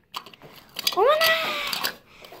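Faint clicks of a plastic capsule being handled, then about a second in a single loud meow-like call that rises and is then held for about a second, falling slightly.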